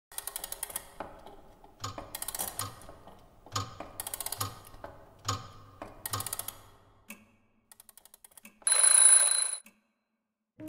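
Mechanical alarm clock ringing in four short bursts of rapid bell strikes, then faint quick ticking. Near the end comes one louder, harsher ring lasting just under a second, which cuts off suddenly.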